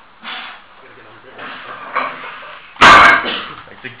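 A 110 kg steel strongman log dropped from overhead, landing on rubber tyres with one loud thud nearly three seconds in.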